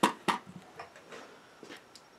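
Two sharp clicks, about a third of a second apart, then a few lighter ticks and taps: gear being handled on a shooting bench, a spotting scope among it.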